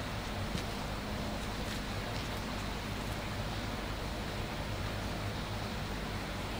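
Steady background hiss with a low hum underneath, even throughout, with no distinct events.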